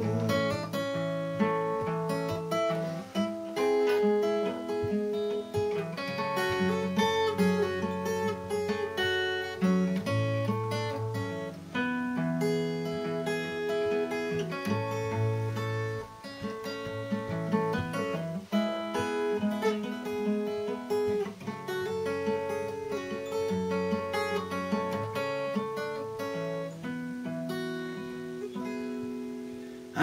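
Capoed steel-string acoustic guitar played solo as an instrumental break: a continuous run of picked and strummed chords over a bass line that changes every second or two, with no voice.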